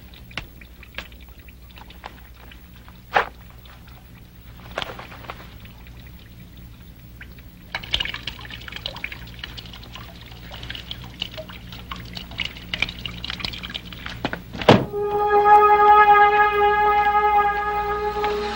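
Liquid splashing into a urinal for several seconds, ended by a loud thunk. A sustained low music note then sets in and holds to the end.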